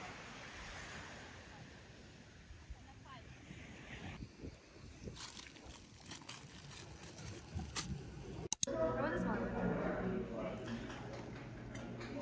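Faint outdoor-like noise with scattered clicks, broken by a sudden cut about two-thirds of the way through. After the cut come indistinct voices over a steady low hum.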